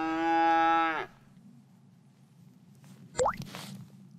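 A cow mooing: one long call that ends about a second in. A little after three seconds comes a brief, rising squeak.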